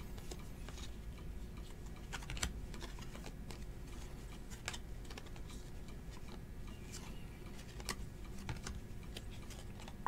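Baseball trading cards being flipped and slid against one another in the hands, a quiet run of scattered light clicks and snaps as each card moves past the next.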